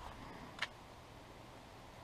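Faint steady background hiss with one short, sharp click just over half a second in.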